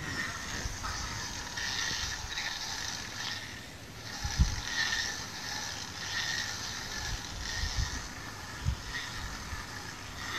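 Emergency hand crank turning the three-position disconnector and earthing switch mechanism of an ABB ZX1.2 gas-insulated switchgear panel clockwise, driving the switch toward its intermediate position: a continuous mechanical whirring and ratcheting with a few dull knocks, the strongest about four and a half seconds in.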